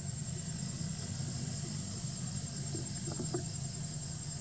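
Steady outdoor background: a low continuous rumble with a high, thin, unbroken insect drone above it, and a faint short pitched call about three seconds in.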